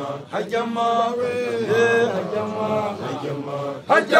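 A group of Basotho makoloane (newly initiated young men) chanting a Sesotho song together, several male voices on long held notes that slide between pitches.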